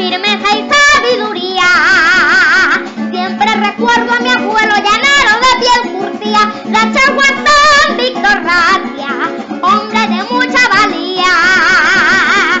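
A boy sings a Venezuelan folk song into a microphone, with a plucked-string accompaniment. He holds long notes with a wide vibrato.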